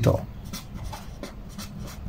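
Pen writing on paper: quiet, irregular scratching strokes as a word is written out by hand.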